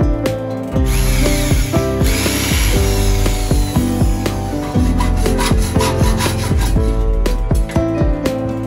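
Wooden slingshot fork being sanded, a steady noise that starts about a second in and fades out near the end, under background instrumental music.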